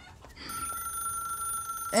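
A steady, high electronic tone starts about half a second in and holds unchanged, with speech beginning right at the end.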